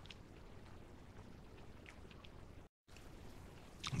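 Quiet room tone with a few faint mouth clicks from chewing a fried breaded tender. A split-second dropout to dead silence comes a little under three seconds in.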